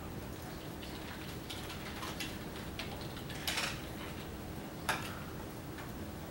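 Room tone with a faint steady hum and a few scattered small clicks and rustles, the most marked about three and a half and five seconds in.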